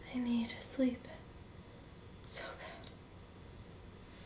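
A woman speaking a few words very softly, half whispered, in the first second, then a brief whispered hiss a couple of seconds later.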